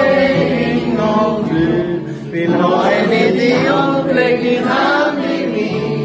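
A small group of men singing a song together, accompanied by an acoustic guitar, with a brief pause between phrases about two seconds in.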